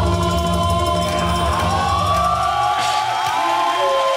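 Live nagauta and hayashi ensemble music: shamisen and drums with long held melodic notes that bend slowly in pitch.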